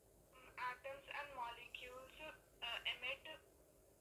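A person speaking faintly in short phrases, the voice thin and cut off at top and bottom as if heard through a phone speaker: a student answering the teacher's question.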